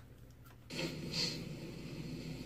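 Brief near quiet, then from under a second in a faint, steady background noise with a low hum: the quiet lead-in of a recorded clip playing back through a computer's speakers.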